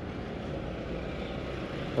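A steady, low vehicle engine rumble with no distinct events.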